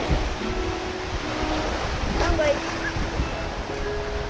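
Wind buffeting the microphone with a steady rumble, over choppy lake water washing against the pier.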